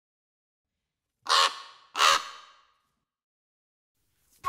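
Two caws of a crow-family bird, about three quarters of a second apart, each trailing off briefly.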